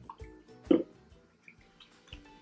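Quiet background music, with one short liquid drip about three quarters of a second in as body oil is dispensed onto lotion in a palm.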